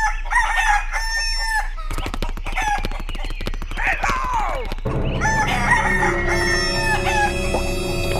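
Chickens clucking and a rooster crowing, with quick calls early on and a long falling call a few seconds in. Music with steady low tones comes in about five seconds in.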